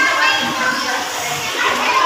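Several children's voices chattering and calling out at once, overlapping.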